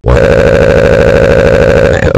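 A loud, steady engine-like drone with a fast, even pulse, cutting in suddenly at the start.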